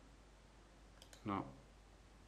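A computer mouse clicking once, a quick double tick of press and release about a second in, against quiet room tone.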